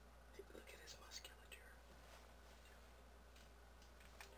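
Near silence under a steady low hum, with a few faint, brief hissy sounds in the first second and a half.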